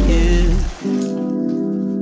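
Water poured from a metal cooking pot into a plastic bucket, splashing, over background music. The music cuts to a different song just under a second in.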